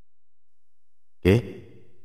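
Silence, then a man says one short word ("oke") a little over a second in.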